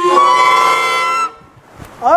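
Venda tshikona reed pipes (nanga) blown together in one held chord of several pitches, lasting a little over a second before cutting off.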